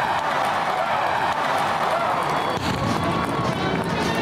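A vast outdoor crowd cheering and shouting, with music playing over it.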